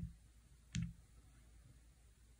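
A single sharp click of a key being pressed on an HP 15C Limited Edition calculator's keypad, under a second in.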